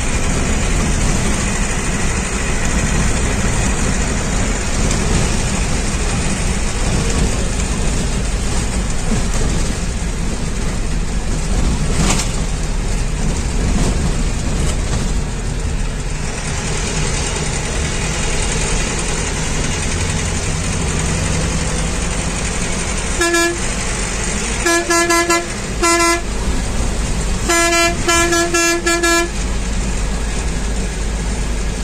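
Bus engine and road noise from inside the cabin, running steadily. A horn honks in a quick run of short blasts, some broken into rapid pips, during the last seven seconds or so.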